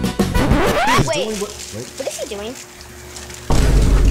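Background music gives way to a rising whistle-like glide and wobbling, sliding tones over one held note, then a sudden loud, low boom about three and a half seconds in that keeps rumbling.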